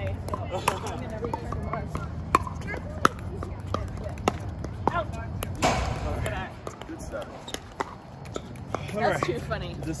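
Pickleball rally: paddles hitting the plastic ball and the ball bouncing on the hard court make a run of sharp pops, several a second apart, over background voices. The pops stop about six seconds in, and talking follows near the end.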